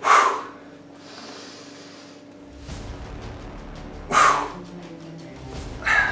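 A man's two sharp, forceful exhalations, about four seconds apart, each pushed out on the lifting effort of a heavy barbell preacher curl. Steady background music plays under them.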